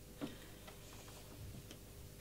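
A few faint clicks: one sharp click about a quarter second in, then fainter ticks, over a steady low hum of room tone.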